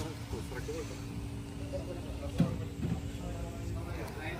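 Faint voices of people talking in the background over a steady low rumble, with one short thump a little past halfway.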